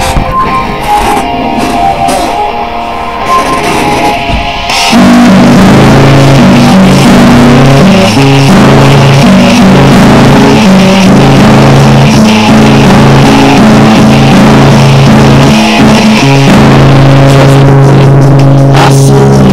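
Loud, distorted hard rock music with heavy guitar, bass and drums. A quieter intro gives way to the full band about five seconds in.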